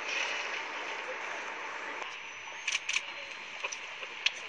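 Steady open-air hiss, with two sharp clicks close together just under three seconds in.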